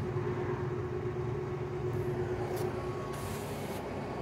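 Steady low mechanical hum with a thin, even tone above it, holding level throughout.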